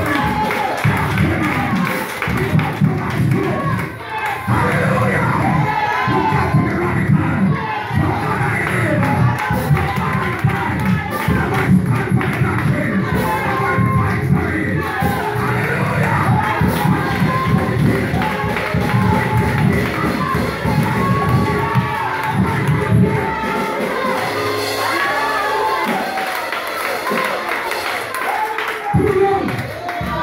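A church congregation singing and shouting together over loud praise music with a driving beat, a man's voice carried over a microphone among them. The heavy low part of the music drops away a few seconds before the end.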